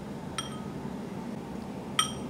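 A metal spoon clinks twice against glass and ceramic dishes: a short ringing clink about half a second in and a louder one at the end, over a faint steady room hum.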